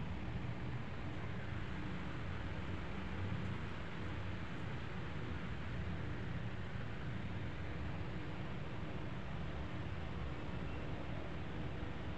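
Steady rushing of a split-type air conditioner's indoor unit blowing cold air, with a low rumble as the airflow buffets the microphone.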